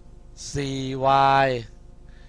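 A man's voice slowly drawing out spoken words, 'four y', read aloud in a sing-song way as they are written; one long stretched utterance in the middle of the two seconds.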